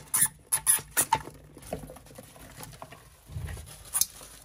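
Two hamsters fighting: a quick flurry of short, sharp sounds through about the first second, then quieter scuffling and scrabbling.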